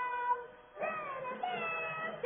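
High-pitched singing playing from a television: a run of held notes that slide up or down, with a short break just before the second second.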